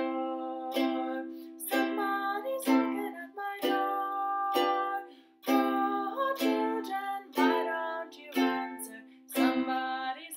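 Makala ukulele strummed in a steady rhythm, with one chord strum about every second.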